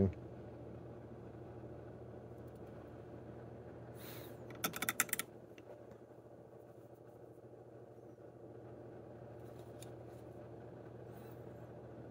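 Quiet room tone with a steady low hum, broken about four seconds in by a short cluster of small clicks and rustling from handling a miniature on its painting grip, with a few faint ticks near the end.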